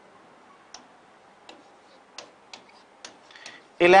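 Marker pen writing on a whiteboard: a string of sharp taps and short scratchy strokes, about six in three seconds.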